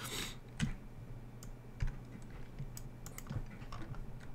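Scattered clicks from a computer keyboard and mouse in use, with a soft thump a little under two seconds in.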